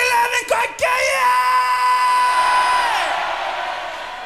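A male rock singer yelling into a stage microphone. Two short shouts are followed by one long, high yell that is held for about two seconds and trails off about three seconds in.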